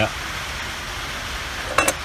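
Steady hiss of rain falling on the roof, with one brief sharp sound near the end.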